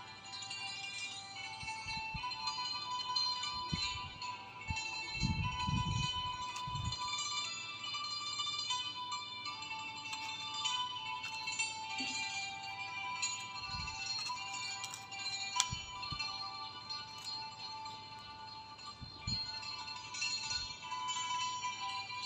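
Background music of bright, chiming tones, with a few dull thumps about five to seven seconds in and again later.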